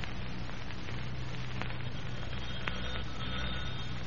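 Steady hiss and low hum of an old radio transcription recording, with a couple of faint clicks.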